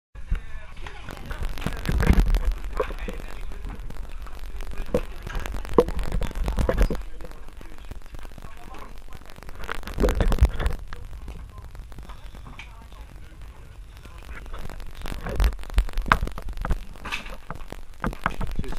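Indistinct voices of divers and knocks of scuba gear being handled on a boat deck, over a low rumble that swells and fades several times.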